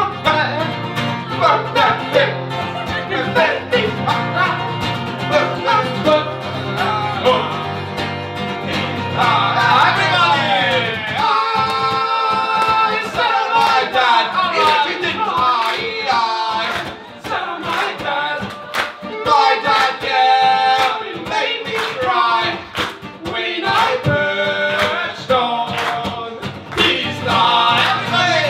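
Live acoustic guitar strummed steadily under energetic singing voices, a loud song in full swing. A low sustained accompaniment underneath drops out about eleven seconds in, leaving the guitar and voices.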